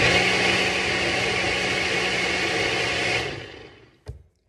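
Ninja countertop blender running at full speed, a loud steady whir with a low motor hum that starts abruptly, then cuts off a little after three seconds and winds down.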